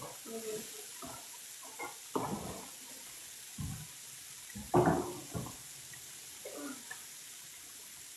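Bacon strips sizzling on an electric griddle, a steady hiss, with a few brief knocks and murmurs from handling around the counter.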